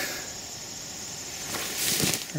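Steady high-pitched chorus of field insects, with a rustle of dry grass underfoot near the end.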